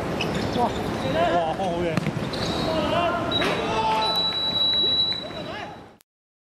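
Football players calling and shouting to each other during open play, with thuds of ball kicks and footfalls on the hard artificial turf. A high, steady whistle-like tone sounds for nearly two seconds in the second half, and the sound fades out near the end.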